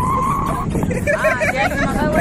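Wind rumbling on the phone's microphone, with a steady high tone that stops about half a second in. A group of young men then laugh and talk in the second half.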